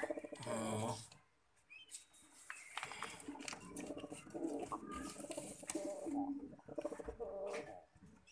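Fantail pigeons cooing: a low, pulsing coo as it begins, then, after a short break, more rolling coos through the second half, with scattered scuffs and sharp clicks among them.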